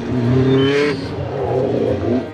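A car engine revving, its pitch climbing over the first second, then running on with a wavering pitch.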